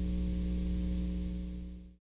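Steady electrical hum with a hiss, fading out near the end.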